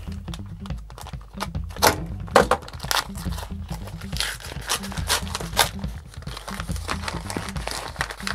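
A small paper packaging envelope being handled and pulled open by hand, crinkling and tearing in a series of sharp crackles, the loudest about two seconds in, over background music.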